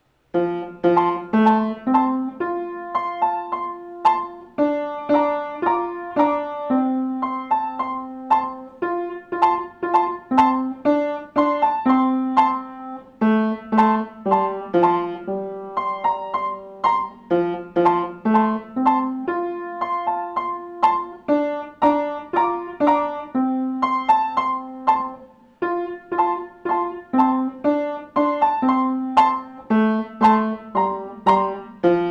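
A beginner piano student playing a simple melody of separate struck notes in short repeating phrases. It starts suddenly about half a second in, out of near silence.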